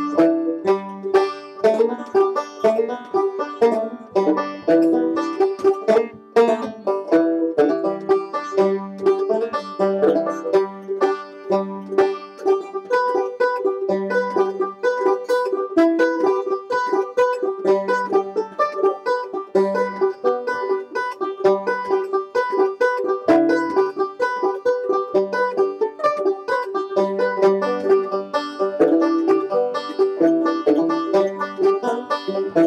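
Two banjos, an open-back and a resonator banjo, playing an instrumental tune together in quick, steady plucked notes.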